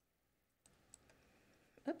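A few faint computer mouse clicks between about half a second and a second in, advancing presentation slides, then a short spoken "oops" at the very end.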